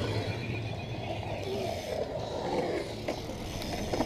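BMX bike tyres rolling steadily over a smooth concrete skatepark bowl, with no sharp landings or impacts.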